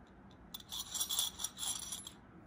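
Metal rings rattling and clinking against a small square Marimekko ceramic plate as the plate is tilted in the hands: a quick run of light, high metallic clinks starting about half a second in.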